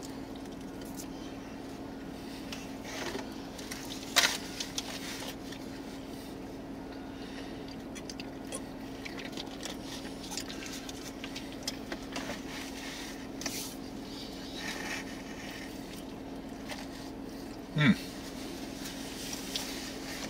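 A man eating a slice of pizza: soft chewing, plus small handling noises from the slice and the cardboard pizza box, over a steady low hum inside a car. The sharpest of these noises comes about four seconds in.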